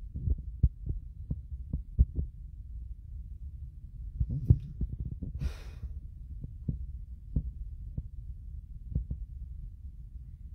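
Handling noise on a hand-held phone's microphone: a steady low rumble with irregular soft thumps, and one short hiss about five and a half seconds in.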